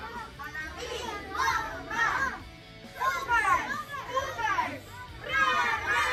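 A group of young children shouting and cheering in loud bursts, several times over, with music underneath.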